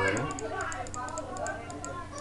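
A rapid run of light clicks, like typing on a computer keyboard, under a person talking. The clicks stop near the end.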